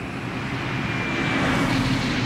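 Steady rumble of a car driving, heard from inside the cabin, slowly growing louder.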